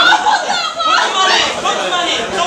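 Excited crowd shouting and chattering over one another, with high-pitched shouts and squeals in the first second.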